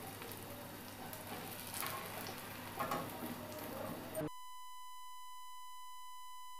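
Malpura batter frying on a tawa, a faint sizzle with a little faint talk. A little past four seconds in it cuts off suddenly to a steady, unbroken beep tone that holds to the end.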